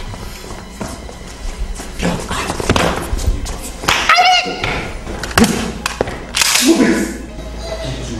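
Thuds and scuffling footsteps of several people moving hurriedly across a room, with a brief vocal sound around the middle, over background music.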